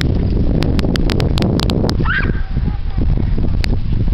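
Wind rumbling on the microphone, with scattered sharp clicks. There is one short high yelp about two seconds in.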